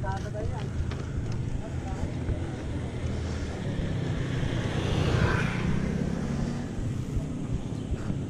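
Wind buffeting an action camera's microphone with a low rumble from a mountain bike rolling over cracked concrete. A motor scooter passes close by, louder for a moment about five seconds in.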